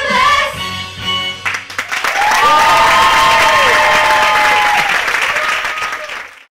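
A youth musical-theatre cast sings the closing notes of a song over its backing track. About a second and a half in, the audience breaks into loud applause and cheering.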